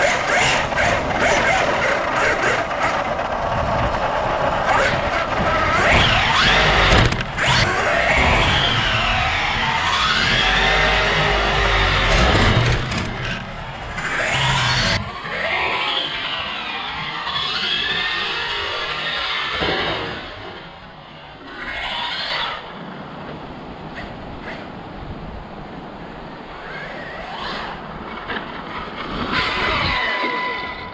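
Brushless electric motor of a Losi Super Baja Rey 2.0 RC truck whining as it is driven hard, its pitch rising and falling with the throttle over tyre and dirt noise. It is louder in the first two-thirds and eases off somewhat after about twenty seconds.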